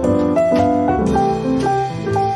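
Instrumental smooth jazz led by piano, a melody of single notes moving over chords and a low bass line.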